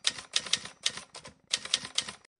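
Typewriter sound effect: a rapid, uneven run of key clacks.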